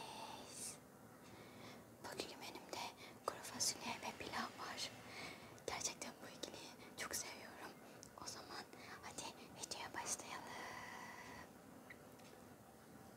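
A woman whispering close to a clip-on microphone, soft hissy speech.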